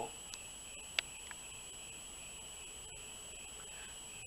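Quiet room tone: a steady hiss with faint, steady high-pitched tones, and one short click about a second in.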